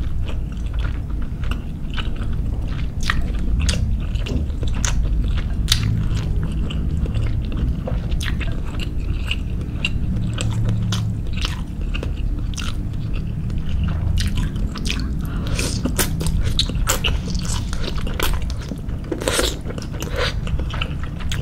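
Close-miked chewing of soft soup foods (meatballs, crab sticks and shrimp), with many short mouth clicks scattered throughout over a steady low rumble.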